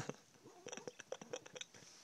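A Chihuahua's quick, quiet, rhythmic breaths, about ten short puffs in a little over a second, as she humps a plush toy.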